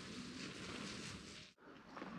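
Faint, even outdoor background noise with no distinct event, cutting out briefly about a second and a half in.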